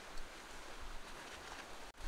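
Faint, steady outdoor ambience of light wind and the sea washing on rocks, with no distinct events.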